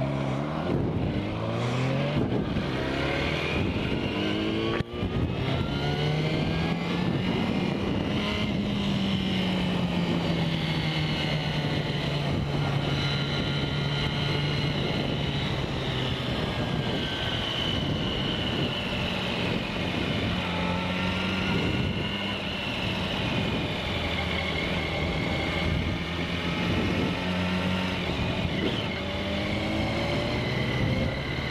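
Sport motorcycle engine heard from the rider's seat, revs rising as it pulls away, with a brief cut about five seconds in as at a gear change, then running at fairly steady revs with slow rises and falls while cruising. Wind and road noise run under the engine throughout.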